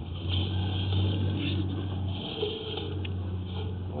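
A low, steady engine hum, louder for about the first two seconds and then dropping back.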